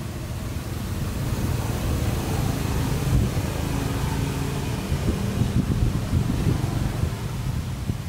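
A steady low rumble with a faint hum in it, growing a little louder about a second in.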